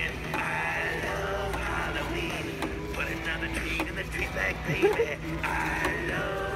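Animatronic Halloween reaper-and-skeleton band playing its built-in song: a voice singing over music, heard from its speaker.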